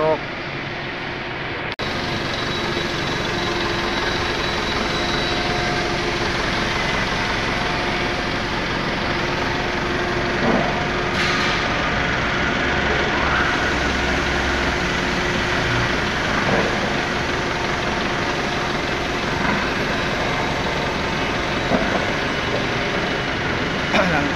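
Forklift engine running steadily, a constant mechanical drone with a low hum that comes up about two seconds in.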